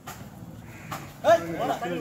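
People shouting during a kabaddi raid: quiet chatter, then about a second in a sharp knock and loud drawn-out shouts lasting about a second.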